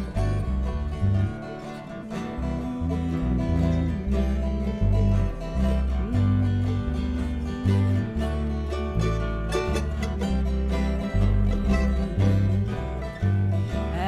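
Acoustic string band playing an instrumental intro in G: strummed acoustic guitars and a mandolin over a plucked bass line walking from note to note.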